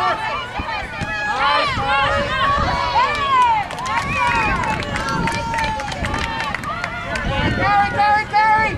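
Several voices shouting and calling over one another during a soccer match, unintelligible, with a few short knocks mixed in.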